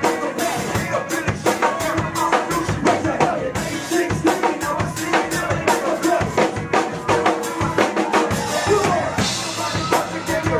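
Loud live band music at a concert, driven by a full drum kit: bass drum and snare hits keep a steady beat under the band.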